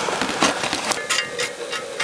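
Hot coals being raked out of a campfire: a continuous crackling scrape broken by several sharp clinks, some with a short metallic ring.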